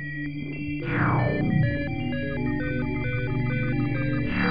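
Electronic music from the ZynAddSubFX software synthesizer: quick bleeping notes jump between pitches over held low tones, with a falling sweep about a second in.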